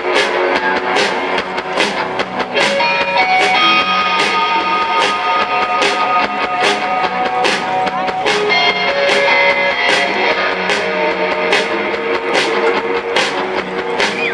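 A live rock band plays an instrumental passage with no vocals: electric guitars over bass and a steady drum beat, with a lead guitar line of long held notes in the middle.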